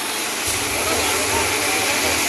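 Loud, steady engine noise from tractors and a trailer-mounted diesel generator running in the street, with crowd voices mixed in.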